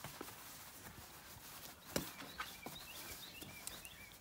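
Faint scattered scuffs and knocks of two kids sparring in boxing gloves on a grass lawn: gloves striking and feet shuffling, with one sharper hit about two seconds in.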